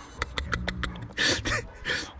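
A rabbit crunching dry corn kernels, a quick run of crisp clicks, with rustling in the straw bedding and two short breathy rustles near the end.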